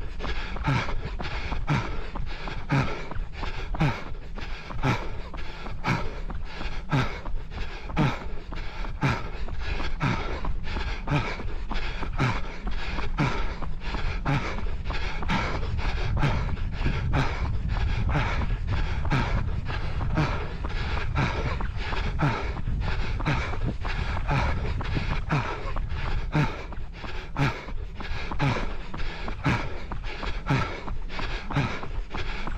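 A runner's footfalls in a fast, steady rhythm of about three steps a second, with heavy panting breaths. A low rumble swells in the middle.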